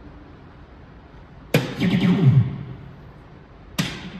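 Soft-tip dart machine: a sharp click about one and a half seconds in, then the machine's electronic sound effect, a run of falling tones. A second, shorter click and falling chime come near the end. The machine plays its hit sound as it scores the throw, a triple 1.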